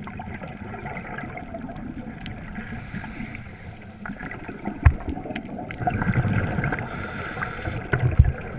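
Muffled underwater sound of a scuba diver breathing through a regulator: a hissing inhale about three seconds in, then a loud burble of exhaled bubbles from about six to seven seconds. A sharp knock comes about five seconds in.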